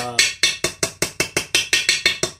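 A small hammer tapping rapidly on a steel socket, about six or seven light, even blows a second, used to drive the new input shaft seal down into the Peerless 2338 transaxle's cast housing.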